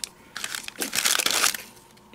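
A clear plastic bag of die-cut paper flowers crinkling as it is handled, for about a second in the middle.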